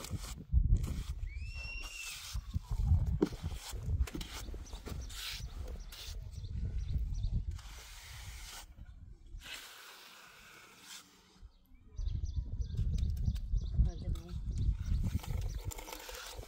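Steel trowel scraping and smoothing the surface of a freshly poured wet concrete slab, in repeated short strokes, with low rumble in bursts. A short chirping call comes about a second and a half in.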